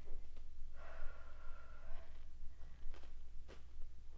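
A woman breathing out hard with the effort of a leg-lift core exercise, one long breath about a second in, with a few faint clicks around it.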